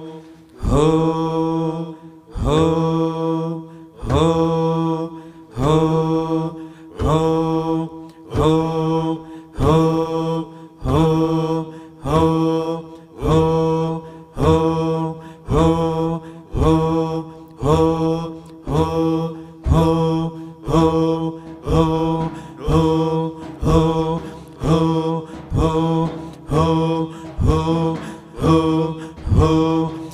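Sufi dhikr: voices chanting one short devotional phrase over and over on a steady pitch, each repetition rising briefly into a held note. The tempo steadily quickens, from about one chant every two seconds to more than one a second.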